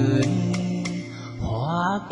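Vietnamese karaoke singing into a handheld microphone over a backing track. The voice holds one long note, then slides upward near the end.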